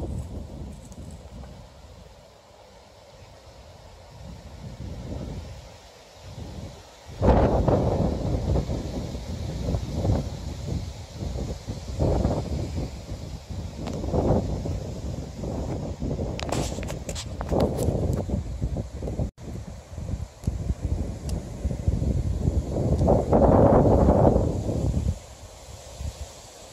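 Wind buffeting the microphone in gusts, a low rumbling noise that is light at first, then jumps up sharply about a quarter of the way in and stays strong, peaking again near the end. A few faint clicks come about two-thirds of the way through.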